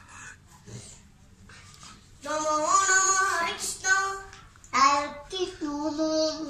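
A boy singing into a microphone, starting about two seconds in: two long phrases of held notes that slide in pitch, the second falling away near the end.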